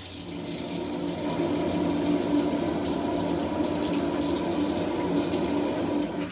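Water running steadily from a kitchen tap and splashing into the sink.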